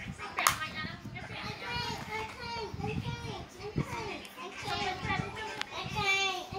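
A child's voice chattering, with a few sharp clicks from the plastic disc cases being handled.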